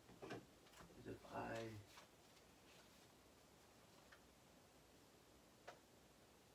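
A short, quiet voice sound in the first two seconds, then near silence broken by two faint clicks.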